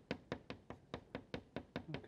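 Soft pastel stick dabbed against paper clipped to a board on a wooden easel: a quick, light run of taps, about six a second.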